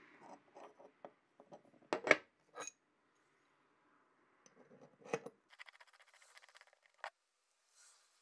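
Flat steel bars handled against an aluminium belt-grinder tool arm: light metal clinks and taps, the loudest a pair of clinks about two seconds in, with a brief soft scraping in the second half.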